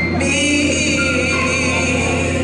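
A woman singing gospel into a microphone over sustained instrumental accompaniment with a held bass note.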